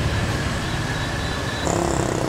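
Street traffic with motorbike engines running close by, heard as a steady low rumble under a faint high whine.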